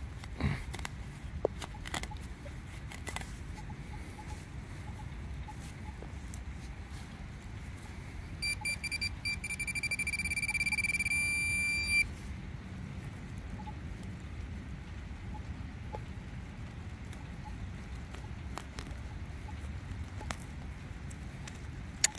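Metal detector giving a steady high beep for about three and a half seconds midway, signalling a buried target that proves to be scrap aluminium can. A few faint scrapes and clicks of a hand digger cutting into wet turf come near the start.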